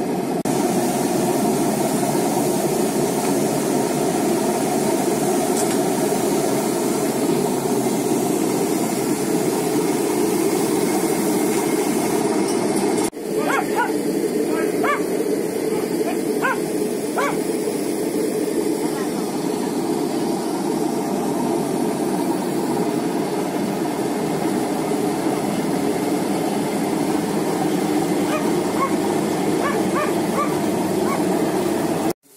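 Electric grape crusher-destemmer running steadily as grapes are fed into it, its motor and drum making a constant loud noise. About halfway through there is a brief drop-out, followed by a few short high yelps or squeaks.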